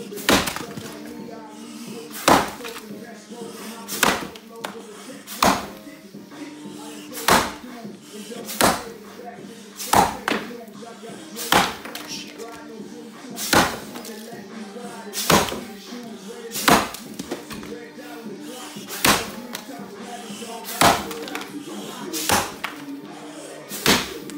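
Axe blows into a dry sycamore log in an underhand chop, about fifteen sharp knocks roughly one every second and a half.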